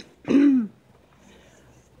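A man clearing his throat once, a short vocal rasp with a falling pitch about half a second in.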